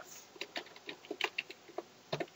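Computer keyboard being typed on: a quick, irregular run of soft key clicks as a line of code is entered.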